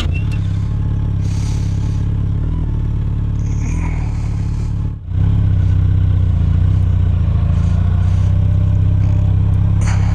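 2018 Yamaha FJR1300's inline-four engine running steadily at low revs, heard from the rider's seat as the bike rolls slowly. It gets a little louder after a brief dip about five seconds in.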